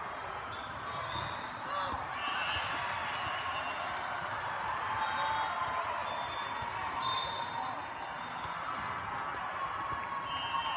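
Indoor volleyball: a few sharp hits of the ball in the first couple of seconds, over the steady chatter of many voices echoing in a large hall.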